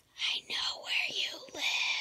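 A person whispering, a few breathy words in quick succession.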